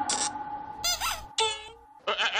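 Three short squeaky comic sound effects in quick succession, the middle one swooping down in pitch and back up.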